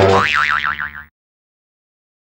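Cartoon "boing" spring sound effect, a wobbling, warbling tone that fades and cuts off about a second in, followed by dead silence.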